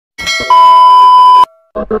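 A short chime, then a loud steady 1 kHz test-tone beep of the kind that goes with TV colour bars, cutting off suddenly about one and a half seconds in.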